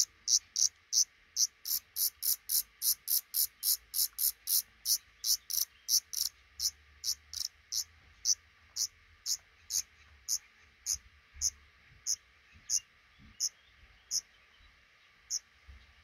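Short, very high-pitched calls of black redstarts at the nest, repeated about three a second, then slowing and thinning out until the last one near the end.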